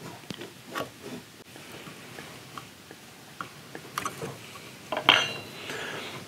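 A brass trigger guard being test-fitted into its inlet in a wooden rifle stock, with light scattered clicks and taps of metal and tool against wood. About five seconds in comes a short, brighter metallic clink with a brief ring, the loudest sound.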